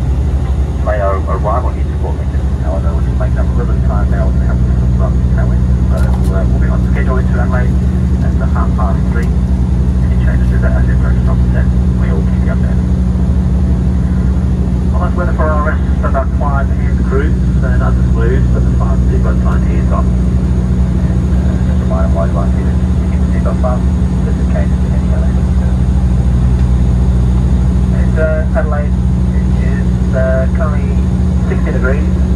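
Cabin drone of a Dash 8 Q300 turboprop airliner in cruise: the Pratt & Whitney PW123 engines and propellers make a steady, loud, low hum of several level tones.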